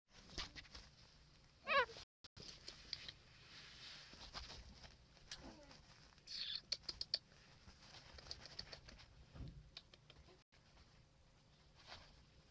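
A teacup Chihuahua puppy gives one short, wavering, high-pitched whine about two seconds in. Scattered light clicks and soft taps follow, with a quick run of sharp clicks around the middle.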